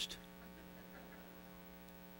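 A steady electrical mains hum, buzzy with many even overtones, heard bare in a pause between spoken words.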